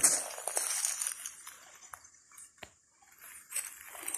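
A few faint crunches and rustles of footsteps on dry leaf litter and bark, fading to near silence about halfway through.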